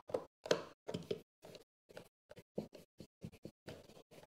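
A run of short, irregular knocks, taps and scrapes as a GFCI outlet and its mounting screws are handled and lined up against an electrical box.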